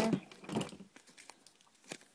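A cardstock craft tag being handled: light paper rustling and crinkling with a few small clicks, the sharpest right at the start.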